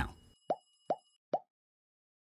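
Three short plop sound effects, evenly spaced a little under half a second apart, from an animated like-subscribe-bell button overlay. Faint high ringing tones sit under the first of them and stop about a second in.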